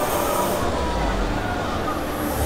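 Low rumble of a Soriani & Moser Top Star Tour fairground ride swinging its main arm and gondolas round mid-cycle, growing heavier about half a second in.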